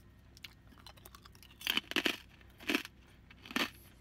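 Cracklin, crisp fried pork fat and rind, being bitten and chewed: a few sharp crunches, starting about a second and a half in and coming roughly one or two a second.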